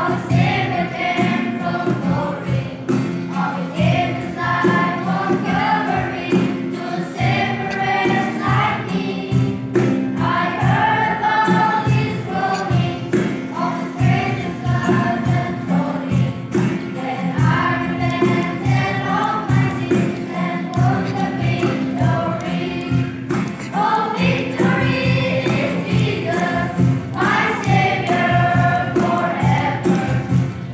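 Children's choir of boys and girls singing a hymn together in chorus, continuously.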